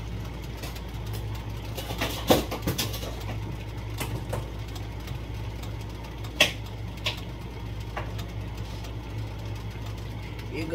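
A pan of chicken and vegetables steaming on the stove, with a soft even hiss over a steady low hum, broken by a few sharp clinks and knocks, the loudest about two and six seconds in.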